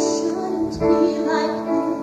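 A woman singing held notes of a slow melody over sustained instrumental accompaniment, part of a live musical-theatre performance.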